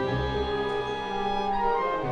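Symphony orchestra playing a slow passacaglia movement: long held string chords over low bass notes that change about every second.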